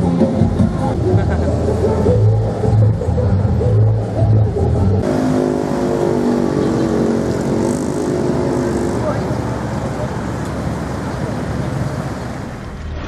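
Road traffic in a jam: vehicle engines running, with voices mixed in. The sound changes abruptly about five seconds in, where a deep engine hum gives way to a lighter mix.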